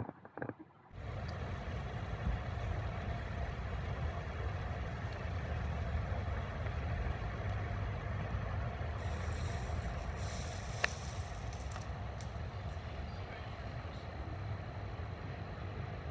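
Steady rumble of a moving road vehicle, engine and road noise, starting abruptly about a second in, with a single sharp click near eleven seconds.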